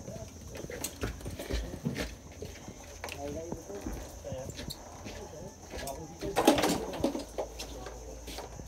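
Indistinct low voices with scattered knocks and handling noise. The loudest sound is a short burst about six and a half seconds in.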